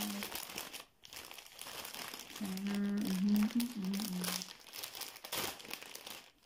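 Clear plastic bag crinkling and rustling as it is handled and opened. A woman's voice holds drawn-out tones for about two seconds near the middle.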